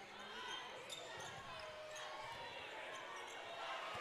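Faint court sound of a basketball game: a ball bouncing on the hardwood floor among distant crowd voices in an arena.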